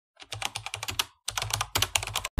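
Computer keyboard typing sound effect: a rapid run of key clicks, with a short pause about a second in.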